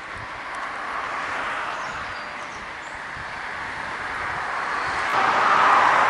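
Road traffic: cars passing on the road alongside, a steady rush of tyre and engine noise. It swells about a second in, eases off, then builds to its loudest near the end as another car draws close.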